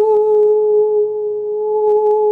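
A woman's voice holding one long, steady sung note on an open vowel, the vocal toning of channeled 'light language'. A short click near the end.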